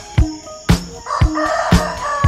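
A rooster crowing cock-a-doodle-doo, one long call beginning about a second in, over dance music with a steady kick-drum beat about twice a second.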